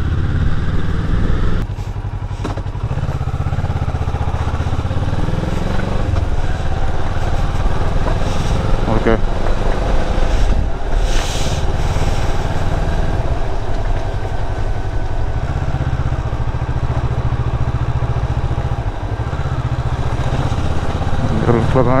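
Motorcycle engine running at low speed on a dirt lane, its note stepping up and down as the throttle opens and closes, with a brief drop about two seconds in.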